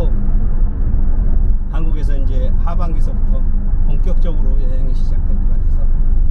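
Steady low rumble of road and engine noise heard from inside a moving car, with a man's voice speaking a few words in the middle.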